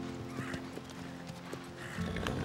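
Hoofbeats of a horse walking, a few light clops a second, over background music with long held chords.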